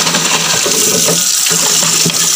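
Tap water running steadily into and over a clear plastic container held under the stream as it is rinsed by hand in a sink.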